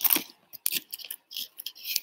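Short scattered rustles and one sharp click about two thirds of a second in, from makeup items being handled while an eyeliner line is extended and touched up.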